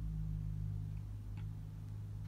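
Low steady hum with one faint tick about one and a half seconds in.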